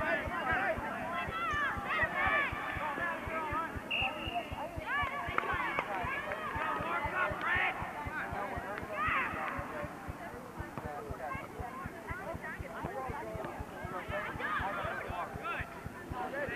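Many high children's voices shouting and calling out at once on a youth soccer field, with one short whistle blast about four seconds in.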